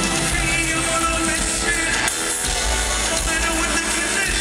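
Loud, bass-heavy live hip-hop music from a full band on stage, with vocals, heard from among the audience in an arena.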